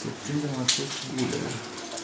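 Indistinct, quieter talking in a small room.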